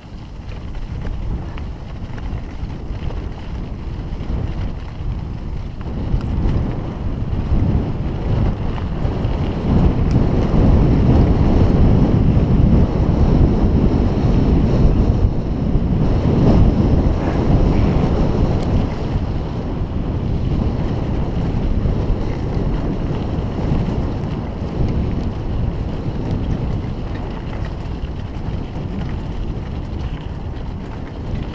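Bicycle rolling over a rough gravel and dirt track: tyres crunching over stones and the bike rattling, with wind buffeting the microphone. It grows louder a few seconds in, is loudest through the middle and eases off towards the end.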